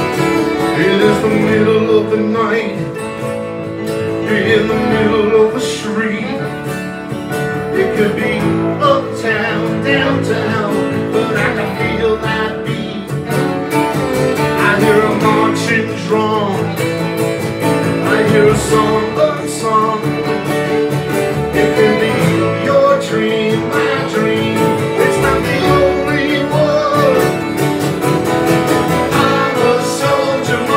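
A band playing a country-folk song live, with two acoustic guitars strummed, a fiddle and a keyboard, and a man singing the lead.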